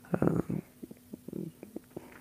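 Soft breaths and small mouth clicks picked up close on a wired earphone's inline microphone held at the lips, over a faint steady hum.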